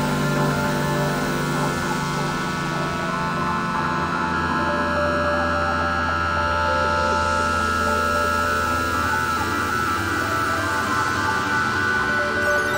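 Ambient electronic synthesizer music: layered sustained tones over a low drone, with a steady airy hiss and no clear beat.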